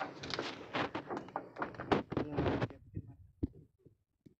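Footsteps knocking and thunking on a rusty corrugated metal roof: a dense run of knocks for nearly three seconds, then a few sparse thunks.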